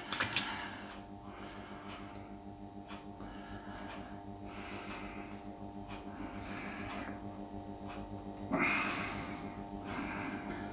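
A steady low hum runs throughout, with a few faint rustles and a louder brief rustle near the end.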